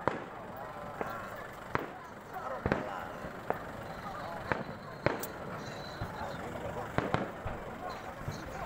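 Fireworks going off in a string of sharp bangs, about one a second at uneven intervals. Crowd chatter runs underneath.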